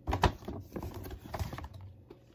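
Handling noise: a quick run of clicks, knocks and rustles as small gift items and a gift bag are handled close to the microphone. The loudest knock comes about a quarter second in.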